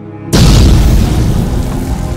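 A loud cinematic boom hit lands about a third of a second in, after a short rising swell, and rings on and slowly fades over music, as in an intro sting.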